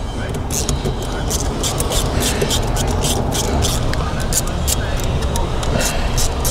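Hand screwdriver turning a screw into the plastic intake tube, with small irregular clicks and scrapes, over a steady low background rumble.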